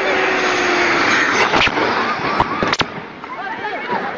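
Several people's voices, one held like a shout, over a loud rushing noise. About halfway through come three sharp cracks close together, and then the sound briefly drops.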